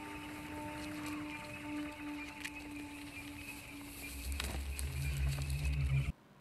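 Film soundtrack: quiet score with a few long held notes, joined about four seconds in by a low rumbling sound that grows louder toward the end.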